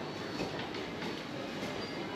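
Steady din of a busy covered market: a dense wash of noise with scattered clicks and clatter and no clear voice standing out.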